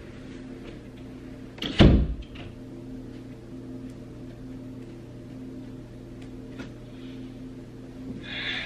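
A door thumping shut about two seconds in, over a steady low hum in the room, followed by a few faint light ticks.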